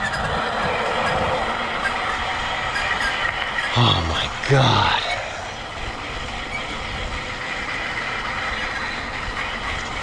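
Mountain bike riding over pavement: steady tyre rolling noise and wind rushing on the microphone. Two short falling pitched sounds about four seconds in.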